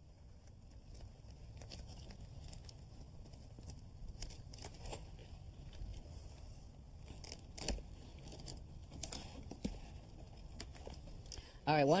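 Self-adhering flashing membrane (Vycor) being handled: its sticky sheet peeled and pressed into a door-sill corner, giving soft crinkling, crackles and a few sharp clicks.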